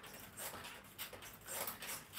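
Mini stepper being pedalled, about two strokes a second, each stroke giving a short squeaky creak from the pedals and pistons.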